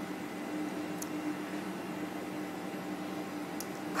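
Steady low mechanical hum with an even hiss, like a fan or air-handling unit running, with two faint ticks about a second in and near the end.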